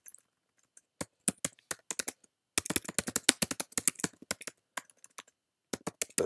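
Typing on a computer keyboard: scattered keystrokes at first, then a quick, dense run of keystrokes through the middle, a short pause, and a couple more keystrokes near the end.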